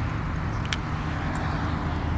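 Steady low rumble of a mountain bike being ridden through a tight, leaning U-turn on asphalt, heard from a helmet-mounted camera, with two faint clicks.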